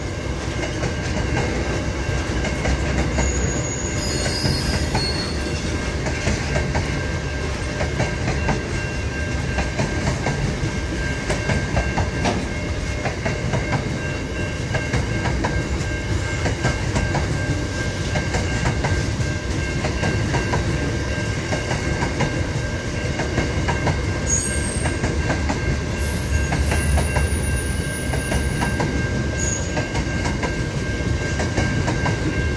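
A freight train's wagons rolling steadily past close by: a low rumble with rapid clickety-clack of the wheels over rail joints and thin, steady high tones from the wheels.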